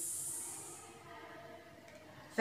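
A woman's drawn-out hissing 'sss', the phonics sound for the letter S imitating a snake. It fades out about a second in, leaving faint room tone.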